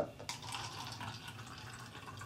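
Vinegar being poured from a small cup into a foam cup: a faint trickle of liquid, a little stronger in the first second.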